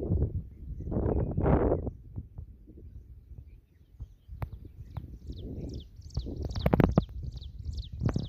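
Gusts of wind rumbling on a phone microphone, loudest in the first two seconds. From about six seconds in, a bird calls a quick run of short, high, falling notes, several a second.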